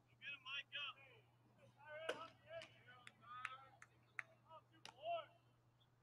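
Faint distant voices calling and shouting across the ballpark, three short high calls in the first second and more scattered later, with several sharp clicks between them.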